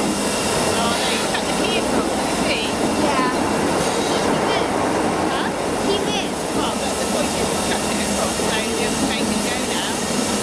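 BR Class 33 diesel locomotive's Sulzer eight-cylinder engine running as it hauls a rake of coaches slowly past, the coaches' wheels rolling over the rails, a steady sound throughout.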